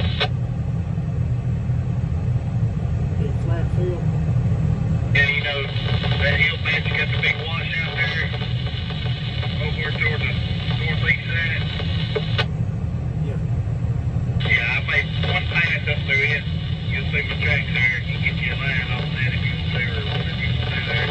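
A voice coming over a handheld two-way radio in stretches that switch on and off abruptly, silent for the first few seconds and again for a couple of seconds past the middle. Under it runs the steady drone of the sprayer's engine heard inside the cab.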